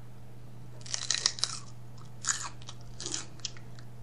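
A raw celery stalk bitten and chewed: crisp crunches in a few clusters, the first about a second in, then again after two and three seconds.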